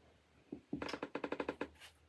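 A quick, even run of about a dozen light clicks lasting under a second, from a skein of yarn being handled and pushed back into a cube storage shelf.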